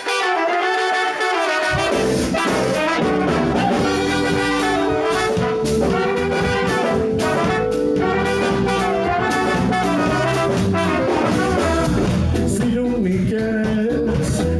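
Live reggae band playing, its horn section of trumpets, trombone and saxophone carrying the melody in long held notes. Bass and drums come in under the horns about two seconds in.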